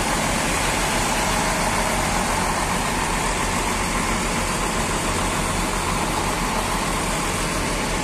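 Intercity coach bus diesel engines idling: a steady low hum under a broad, even rushing noise.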